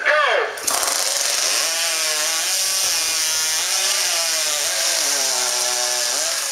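Two chainsaws cutting through logs at full throttle in a timed competition cut. They start abruptly about half a second in and run at an even, loud level.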